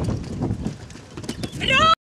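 Quick patter of a dog's paws knocking on the wooden dogwalk plank as it runs down the ramp, with a high, rising voice call near the end, then the sound cuts off suddenly.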